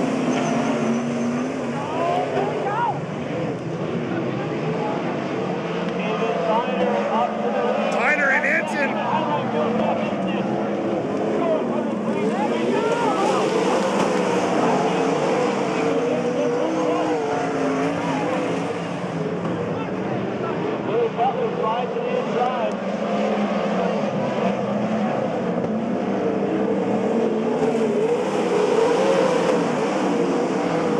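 Several V8 sprint cars running around a dirt oval, their engine note swelling and falling in pitch as they pass. A brief high wavering sound rises above them around eight seconds in.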